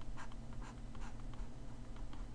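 Stylus scratching and tapping on a drawing tablet while a small slice of the graph is shaded in: many faint, short strokes over a low steady hum.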